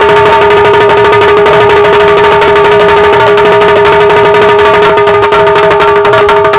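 Loud instrumental Bundeli Rai folk music: fast, dense hand-drumming over a steady held chord.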